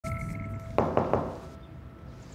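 Three quick knocks on an office door, about a fifth of a second apart, after a steady held tone.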